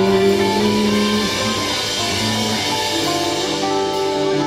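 A soul band playing live: steady, loud instrumental music with held notes that shift every second or two.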